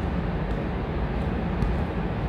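Steady background rumble and hiss of a noisy room or microphone, with no voice.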